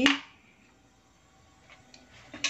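A single sharp click right at the start, then quiet room tone with a faint tap near the end.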